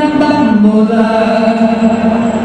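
Music: a voice singing one long held note that steps down in pitch about half a second in, then holds.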